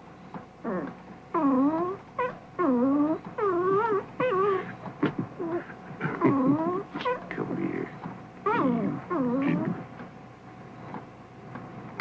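Young puppy whining and whimpering: about a dozen short, high cries over roughly ten seconds, each dipping and rising in pitch.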